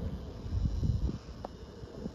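Wind buffeting the microphone outdoors, an uneven low rumble that swells around the middle, with one short tick about one and a half seconds in.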